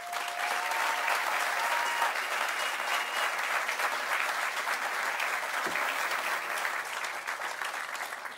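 Audience applauding for a speaker called to the podium, a steady patter of many hands clapping that begins to die away near the end.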